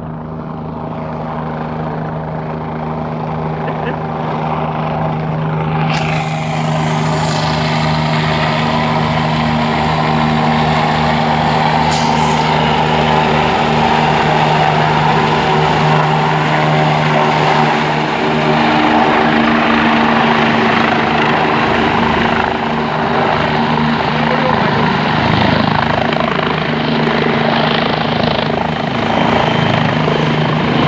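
Helicopter coming in to land and hovering low: a steady rotor and turbine drone that grows louder over the first several seconds. A loud rushing hiss joins it about six seconds in and stays to the end.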